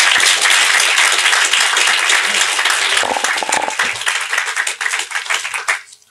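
Audience applauding: dense, steady clapping from a roomful of people that stops abruptly just before the end.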